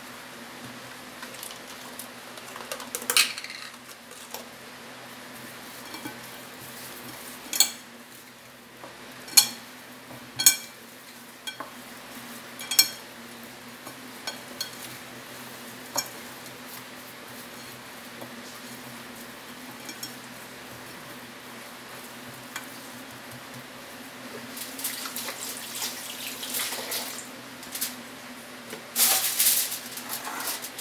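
Raw pork belly pieces being turned and rubbed by hand in a glass bowl, with a handful of sharp clinks as the meat or the hand knocks the glass, over a steady low hum. Near the end comes a louder rustling noise.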